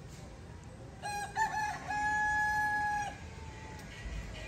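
A rooster crowing once, starting about a second in: a few short broken notes, then one long held note that fades out about three seconds in.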